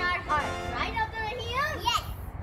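Young children's voices over background music.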